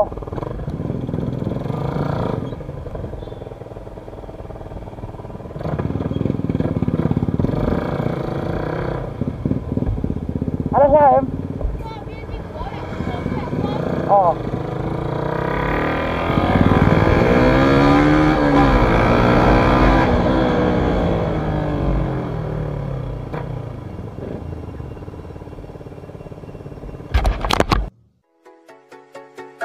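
Motorcycle engine running on the move, its pitch rising and then falling again about two thirds of the way through. The sound cuts off suddenly at the very end.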